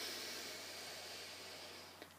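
A person's long, slow breath out, blown out audibly as a steady hiss that fades gradually and stops near the end.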